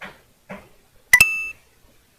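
Android screen-reader sound as the focus moves to the next menu item after a swipe: a sharp click followed by a short, steady high beep about a second in, preceded by two brief faint sounds.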